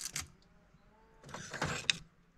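Wicker basket and wooden objects being handled: two brief knocks at the start, then a rustling, scraping rattle about a second and a half in that ends in a sharp click.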